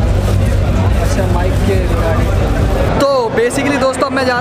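Loud din of a busy expo hall: a steady low rumble under a babble of voices. About three seconds in it changes abruptly to a man talking close to the microphone.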